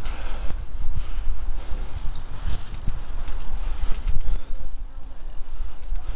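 Bicycle being ridden along a rough tarmac cycle path: a steady low rumble of wind on the microphone with irregular knocks and rattles as the bike jolts over the uneven, root-cracked surface.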